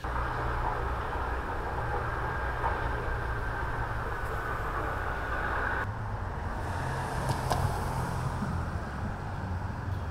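Steady outdoor background noise with a low rumble of road traffic or a running engine. The sound changes abruptly about six seconds in, to a similar steady outdoor noise.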